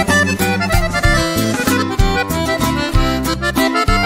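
Instrumental break in a corrido, with no singing: an accordion plays the melody over bass and a steady rhythmic beat.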